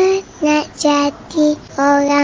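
A child singing: a held note rising at the start, then three short notes and a longer one near the end.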